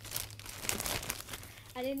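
A packaging wrapper crinkling and rustling as it is handled and pulled open by hand: a dense run of crackles for about a second and a half.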